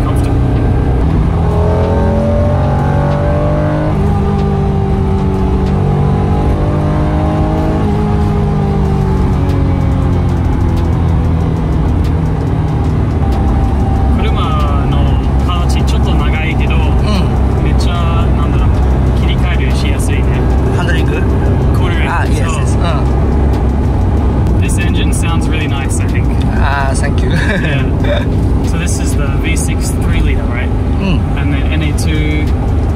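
Honda NSX V6 engine heard from inside the cabin, pulling hard under acceleration: its pitch climbs, drops once at a gear change about four seconds in, and climbs again. It then settles to a steady low drone of cruising with road noise.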